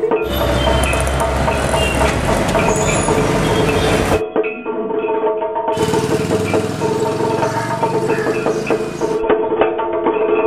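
Background music plays throughout. Twice it is overlaid by the noise of a busy street with motorbike engines and a low rumble: for about four seconds from the start, then again for about three seconds from the middle.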